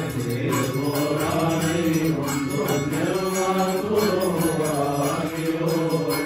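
A group of men's voices chanting a hymn together in long, drawn-out melodic lines, as Coptic monks do during a liturgical rite.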